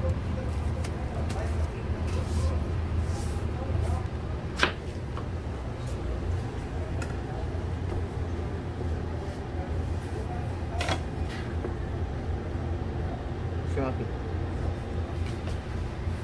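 Two sharp knocks on a plastic cutting board, some six seconds apart, over a steady low hum, as a vegetable sushi roll is handled and cut.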